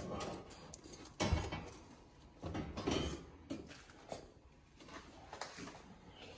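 Metal oven rack sliding out and being set down on the gas stove's grates: a sharp knock about a second in, then a short metal clatter and another knock.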